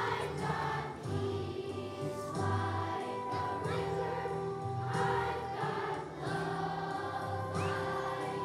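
Children's choir of fifth graders singing a song together over instrumental accompaniment.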